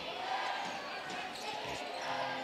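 A basketball being dribbled on a hardwood court under a steady murmur of arena crowd noise and voices.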